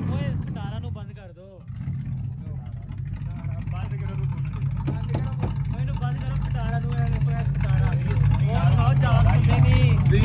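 A car engine idling steadily, with people talking over it.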